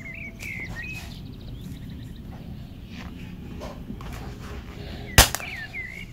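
A single sharp metallic click near the end as the steel combination pliers are handled. Birds chirp in the background at the start and again near the end, over a steady low background hum.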